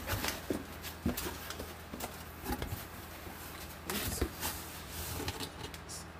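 Cardboard shipping box and its shredded-paper packing being handled: irregular rustling with light knocks and taps of cardboard.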